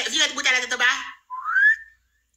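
Excited, high-pitched talking, then one short whistle rising in pitch near the end.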